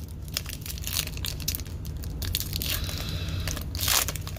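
Foil wrapper of a baseball card pack being torn open and crinkled by hand, a dense run of crackles that is loudest near the end.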